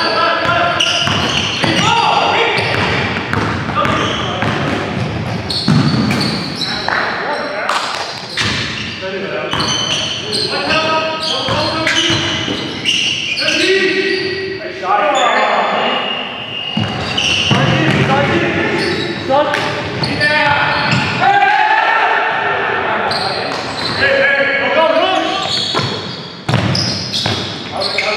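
A basketball bouncing on a hardwood gym floor as it is dribbled, with repeated thuds, while players' voices call out in the reverberant gymnasium.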